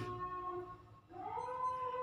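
A domestic animal's drawn-out call: a faint held tone at first, then, about a second in, a call that rises in pitch and holds steady.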